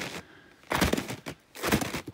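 Footsteps crunching through cold snow while walking up a slope, three crisp steps about a second apart.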